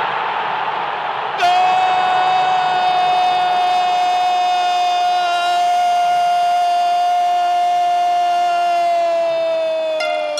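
A radio football commentator's long goal cry, 'Gooool', held on one steady pitch for about eight seconds and sagging slightly in pitch at the end. It follows about a second and a half of crowd roar.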